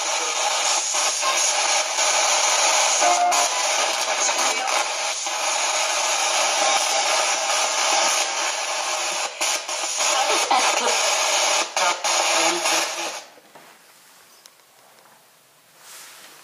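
Spirit box sweeping through radio frequencies: a steady wash of static chopped by rapid clicks as it scans. It cuts off about thirteen seconds in, leaving quiet room tone.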